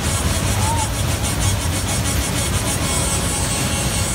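Loud fairground ride music with a fast, ticking high beat, over the steady rumble of a Twister ride's cars spinning.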